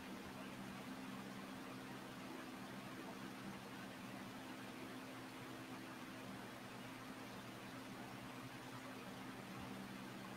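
Faint steady low hum with an even hiss throughout: background room tone.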